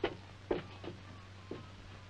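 A few light, irregular footsteps on a floor as people walk across a room, over a steady low hum.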